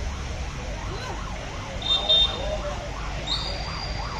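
A siren wailing, rising and falling about three times a second, over a steady low outdoor rumble, with a brief high tone near the middle and another near the end.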